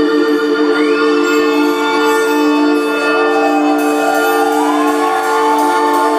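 Live rock band playing a slow, droning passage: a chord of long held tones, with higher notes gliding up and down above them.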